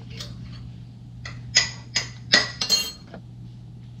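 A run of sharp clinks of glass and metal, about eight in all and closest together between one and three seconds in, several ringing briefly: a glass mason jar and a metal spoon knocking against a stainless steel pan as mushrooms are put into the jar.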